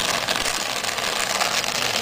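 Gas welding torch flame hissing steadily as it heats a dented steel two-stroke expansion chamber to raise the dent out.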